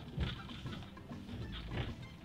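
Low, steady rumble of a moving van heard inside the cab, with a few short knocks.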